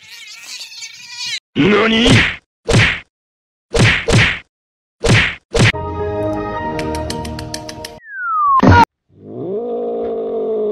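A run of short, sharp whacks, then a ringing tone with quick clicks and a falling whistle that ends in a loud hit. In the last second a cat starts a drawn-out growling yowl.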